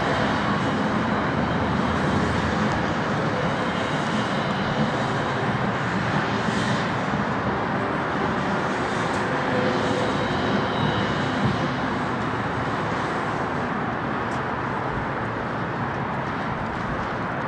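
Steady open-air noise in a large stadium, an even rumble and hiss with no music or speech, easing slightly near the end.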